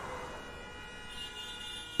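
Faint city traffic ambience: a low hum with several steady high tones that join about a second in.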